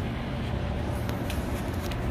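A steady low hum with a few faint clicks about a second in and near the end.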